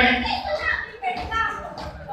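A young man's voice talking into a handheld microphone and coming through loudspeakers, with other voices from the crowd around it.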